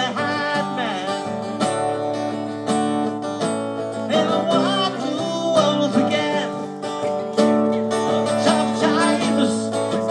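Acoustic guitar strummed and picked steadily in a live solo performance, an instrumental stretch of the song.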